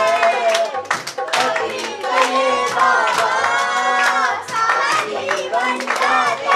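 Children singing a devotional song, with hand claps keeping a steady beat of roughly two claps a second.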